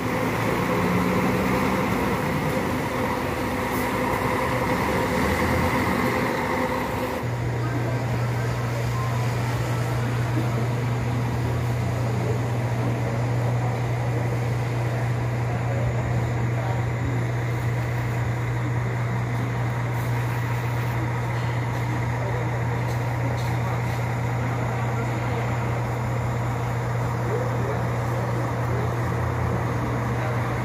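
A coach's engine running as the bus pulls away. About seven seconds in, the sound changes abruptly to a steady low drone of an idling bus engine that holds unchanged.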